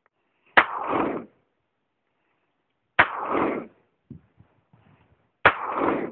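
A .357 Magnum revolver fires .38 Special rounds: three shots about two and a half seconds apart, each trailing off for about half a second.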